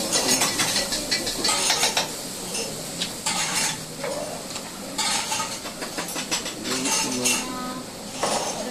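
A metal ladle clanking and scraping against a steel wok as a cook stir-fries, with irregular clinks and clatter of kitchen utensils.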